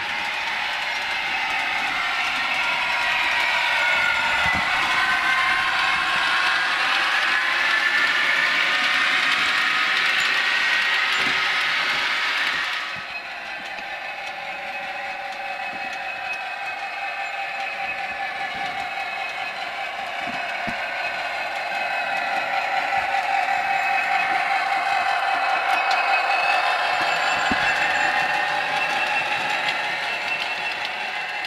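Model trains running round a layout, with a steady rolling and running sound that swells and fades as they pass. About 13 seconds in the sound changes abruptly and drops, then builds up again.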